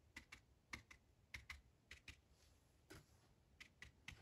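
Near silence broken by about a dozen faint, irregular taps as a flat watercolour brush loaded with paint is dabbed onto watercolour paper.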